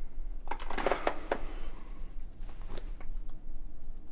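Clothing rustling as a collar and tie are handled: a dense crackle of fabric noise starting about half a second in, and a shorter one near three seconds.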